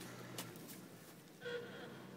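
Faint low hum of a distant off-road vehicle's engine, with a light click about half a second in and a brief faint high tone near the middle.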